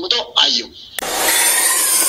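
Logo-intro sound effect: a loud, steady hiss-like rush of noise that starts suddenly about halfway through, with faint falling tones in it.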